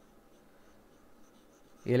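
Near silence: faint room tone, with a man's voice starting right at the end.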